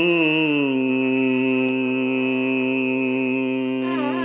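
Carnatic classical music in raga Shuddha Dhanyasi. After a short glide, one long note is held for about three seconds over a steady drone, and ornamented gliding phrases start again near the end.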